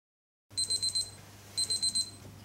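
Electronic timer alarm beeping in two short bursts of rapid, high-pitched beeps, signalling that the 10-second answer time is up.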